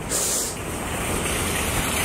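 Wind blowing across the microphone: a steady rushing noise, hissier for the first half second.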